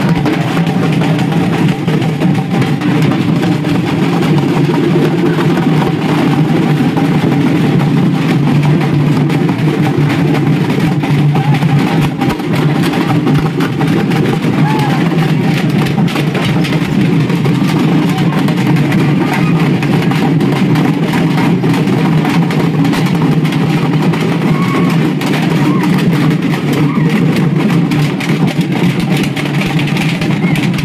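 Several handheld frame drums beaten in a fast, continuous rhythm, with the din of a large crowd's voices mixed in.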